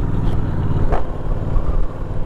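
2021 Honda Rebel 1100 DCT motorcycle's 1084 cc parallel-twin engine running steadily at road speed.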